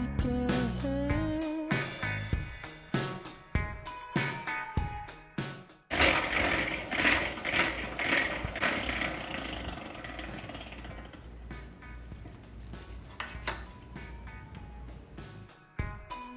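Background music for about the first six seconds; then it stops and a hand-cranked stainless-steel honey extractor is heard spinning frames, a mechanical whir with a repeating beat from the turning, loudest at first and easing off.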